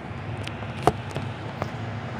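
A few light clicks and one sharper knock just under a second in, as things are handled in a kitchen, over a steady low hum.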